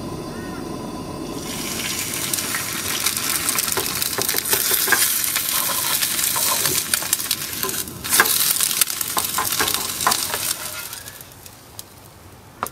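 An egg frying in hot oil in a frying pan: a loud sizzle with many small spattering pops starts about a second and a half in, breaks off briefly, then dies away near the end.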